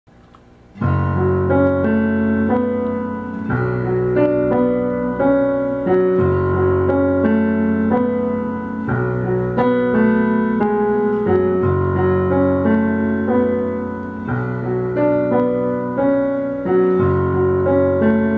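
Piano playing a song's instrumental intro, beginning about a second in: sustained chords over deep bass notes that change about every two and a half seconds, with repeated higher notes above them.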